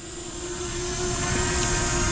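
Hubsan Zino Mini Pro quadcopter hovering close by: a steady, even propeller hum over a low rushing noise, growing louder over the first second or so.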